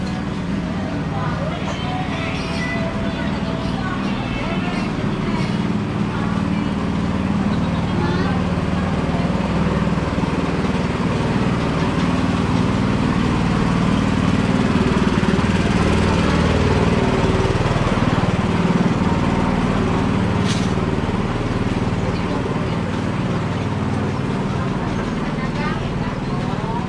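Busy market ambience: people talking in the background over a steady low rumble that swells in the middle.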